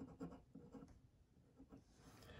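Faint scratching of a pen writing on paper, a quick series of short strokes as letters are written.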